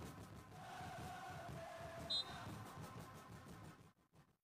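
Faint ambience of an outdoor five-a-side football pitch, with a brief high chirp about two seconds in. The sound drops out almost entirely just before the end.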